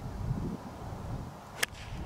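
A 9-iron strikes a golf ball in a full swing: a single crisp, sharp click about one and a half seconds in.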